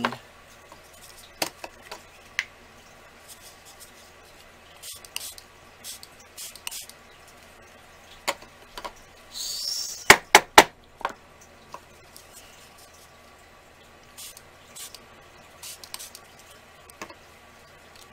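Light scattered taps and clicks of craft supplies and tools being handled while paste is dabbed onto a box, with a short hiss about nine and a half seconds in, followed by a quick cluster of sharp clicks.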